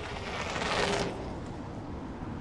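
Logo sting sound effect: a rushing noise that swells to its loudest just under a second in, then eases to a steady hiss.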